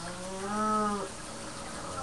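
A short hummed "mmm" from a person's voice. It comes in about a third of a second in, rises and then falls in pitch, and lasts under a second.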